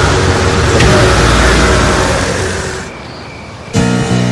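A car pulling away, its engine and tyres giving a steady rumble that fades out over about three seconds. Music starts abruptly near the end.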